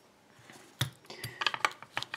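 Light metallic clicks and taps as euro lock cylinders are handled and swapped at a leather-padded vise, starting about a second in after a short quiet spell.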